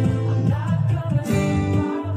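Acoustic guitar strumming chords: one chord rings on, and a new strum comes in a little past halfway.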